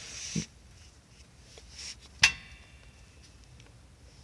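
A single sharp metallic clink about two seconds in, ringing briefly, as a hand handles the truck's damaged wheel hub and brake parts. Otherwise low background.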